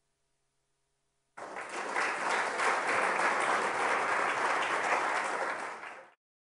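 Audience applauding at the close of a lecture, starting suddenly about a second and a half in and cut off abruptly at the end.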